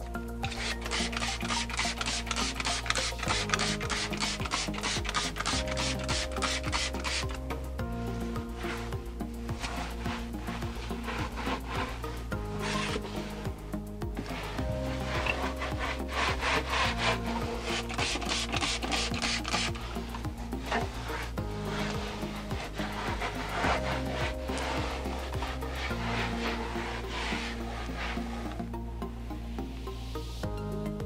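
A cloth rubbing and wiping the inside of a kitchen cabinet in quick repeated strokes, over background music.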